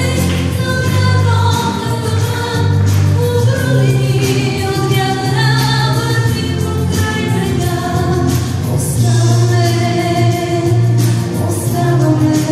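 A woman singing live into a handheld microphone, holding long notes, over an instrumental accompaniment with steady low bass notes.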